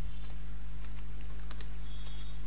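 Computer keyboard being typed on: a few quick, irregular key clicks over a steady low electrical hum.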